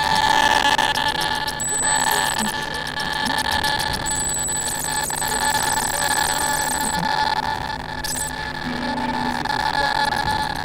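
Free-improvised experimental music: a held, high buzzing tone, with a thin, very high whistle coming in twice, early and about four seconds in.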